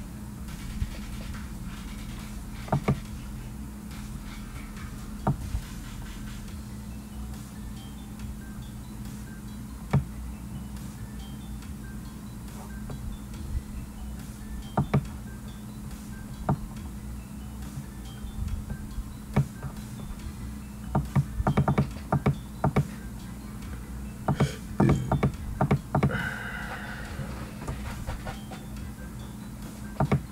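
Background music, with scattered sharp clicks and taps that bunch together in the last third.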